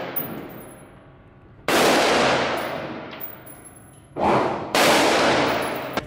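Handgun shots in an indoor shooting range, each followed by a long ringing reverberation that dies away over a second or two: one a little under two seconds in, then two close together near the end, about half a second apart.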